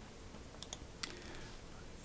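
A few faint clicks at a computer, as a search suggestion is picked and the search runs: a quick pair about half a second in and one more at about a second, over quiet room tone.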